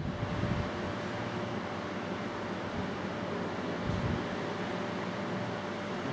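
Steady room hum and hiss with a faint steady tone running through it, and some uneven low rumble.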